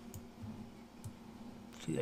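A few faint computer mouse clicks, short and spaced apart, over a steady low hum.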